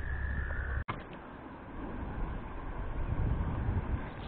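A steady high-pitched frog trill that cuts off abruptly just under a second in, followed by a low, uneven rumble.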